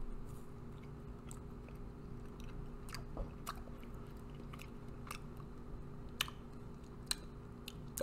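Faint chewing of a bite of a frozen chocolate fudge bar with a chewy caramel centre: soft mouth clicks scattered irregularly, with a couple of sharper ones near the end.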